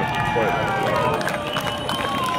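Live band playing quietly through an outdoor PA in a pause between sung lines, with people in the crowd talking near the microphone.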